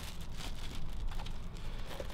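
Clear plastic bag crinkling and rustling in irregular crackles as a hardened casting sock is handled and worked off the leg.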